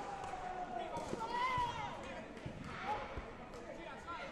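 Several dull thuds of taekwondo fighters' feet stepping and landing on the foam mat during sparring, with voices calling out in a large hall.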